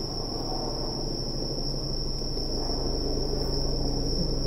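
Night insects singing in one steady, unbroken high-pitched trill, with a low steady hum beneath.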